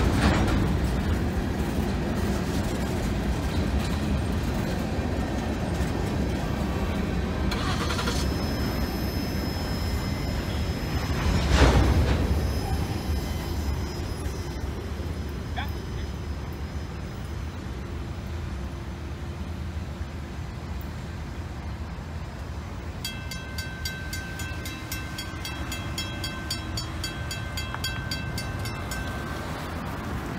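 Freight train of hopper cars rolling through a level crossing, its wheels on the rails making a steady rumble, with a single loud bang about twelve seconds in. The rumble then fades, and in the last seconds the crossing bell rings in a steady repeating rhythm.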